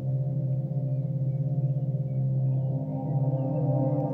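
Ambient meditation background music: a steady low drone of layered, sustained tones that waver slightly, with a few faint short high chirps above it.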